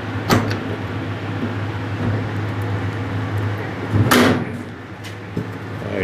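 Blast cabinet door being squeezed shut and latched against its weather strip: a small click near the start and a sharp clunk about four seconds in, over a steady low hum.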